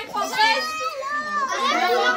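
Several voices talking excitedly over one another, among them a high-pitched child's voice.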